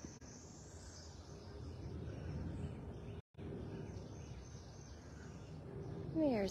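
Faint outdoor background noise: a low rumble under a steady high hiss. The sound cuts out completely for a moment a little past the middle.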